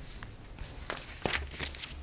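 Sheets of paper rustling and being turned over on a desk close to a microphone, with a few short sharp crackles about a second in.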